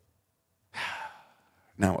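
A man sighs once, a breathy exhale of about half a second near the middle.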